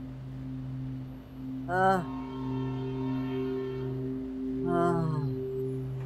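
Background score: a sustained low drone of held tones, with a brief wordless vocal note rising and falling about two seconds in and another near five seconds.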